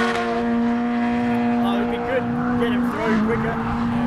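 Drift car engine running at steady revs as the car slides through a corner, one held pitch that barely changes.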